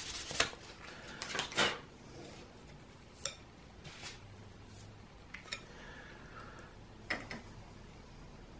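A few last strokes of sandpaper on a plastic three-blade drone propeller in the first two seconds, then about five light clicks and taps, spread out, as the prop and the metal shaft of a Dubro prop balancer are handled and remounted.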